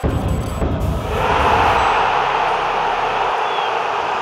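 Outro logo sting: a sudden rush of noise with a low rumble as the logo assembles, settling after about a second into a steady, loud noisy wash.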